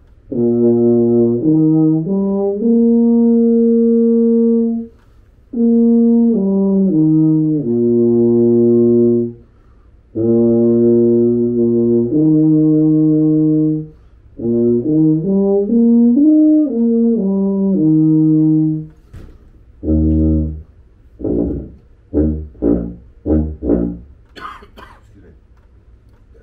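Eb tuba played solo in four phrases of held and stepping notes, each a few seconds long. Near the end comes a run of short, very low notes.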